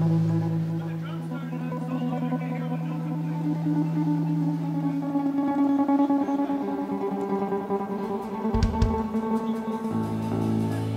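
Amplified guitars and bass on stage holding long sustained notes. The pitches shift about halfway through, and there is a short low thud near the end.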